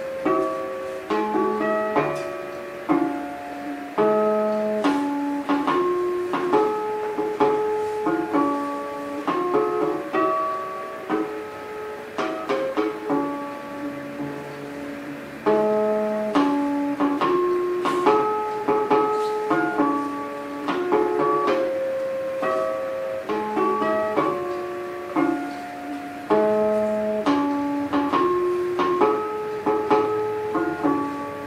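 Solo early-romantic guitar, an 1828 Pierre René Lacôte, playing a lively variation of plucked notes in repeating phrases, built on the high, flute-like notes (harmonics) the speaker calls 'notes flûtées'.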